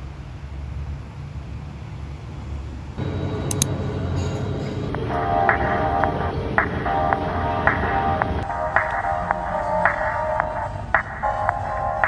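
Background music. A low steady rumble comes first, then a beat begins about three seconds in, and a bright, repeated melodic figure joins a couple of seconds later.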